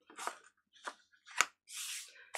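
Handling noise from a hinged stamping platform: a few soft rubs, one sharp click about one and a half seconds in, then a brief brushing sound as the lid is swung up off the stamped fabric.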